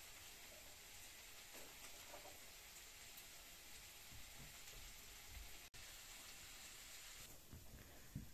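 Near silence: a steady faint hiss with a few soft rustles of cloth being handled.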